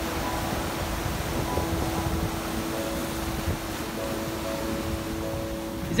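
Rough surf surging and washing over a rocky shore, a steady rushing noise heavy in the low end, with wind on the microphone. Faint background music of held notes runs underneath.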